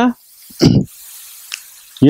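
A man talking into a headset microphone in short phrases. Between the phrases there is about a second of steady breathy hiss close to the mic.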